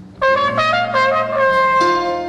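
A brass horn plays a short jazz phrase of sustained notes, entering a moment in and holding a long note near the end, over double bass and piano.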